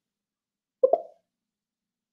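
Near silence, broken about a second in by one short pop made of two quick pulses.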